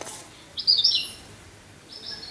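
A bird chirping: a quick run of high notes about half a second in, the loudest sound, with a brief click at the very start.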